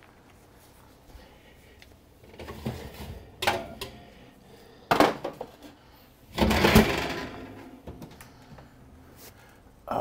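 Metal clatter of a pan on the racks of a kitchen oven: a few sharp clinks, then a louder, longer rattle about six and a half seconds in.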